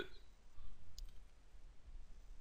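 Faint low room hum with a single faint click about a second in.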